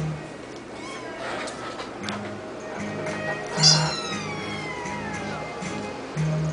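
Kitten meowing: one loud cry a little past the middle that falls steadily in pitch for about a second and a half, over background music with a repeating bass line.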